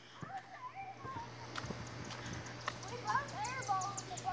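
Faint, distant voices talking, with a few faint knocks in between.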